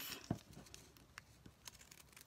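Faint, scattered snips and paper rustling as pinking shears begin cutting a circle through a stapled stack of folded paper napkin.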